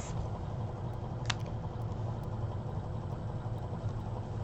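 Steady low background hum with a single faint tick a little over a second in.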